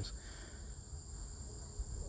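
Quiet background noise: a faint, steady high-pitched whine over a low rumble.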